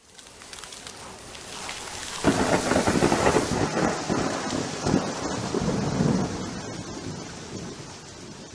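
Rain and thunder: a steady hiss of rain, then a thunderclap a little over two seconds in that rumbles on and slowly dies away.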